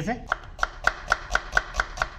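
Kitchen knife finely chopping a red onion on a wooden cutting board: short, even knife strokes hitting the board at about four a second.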